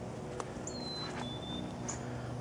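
Black-capped chickadee singing its two-note fee-bee whistle, a clear higher note followed by a slightly lower one, with a few short high chirps from small birds around it.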